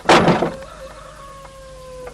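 A wooden plank door slams shut with a heavy thud right at the start. A rooster crows across it, one long held call that sinks slightly in pitch and trails off about two seconds later.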